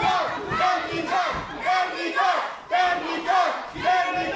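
Lucha libre crowd chanting in unison: a two-beat shouted chant repeated about once a second.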